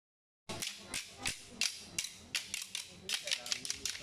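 Wooden sticks struck together by several dancers, a series of sharp clacks a few times a second, not quite in unison.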